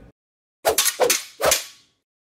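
Three sharp hits with short ringing tails, about half a second apart, a sound effect for a production logo sting.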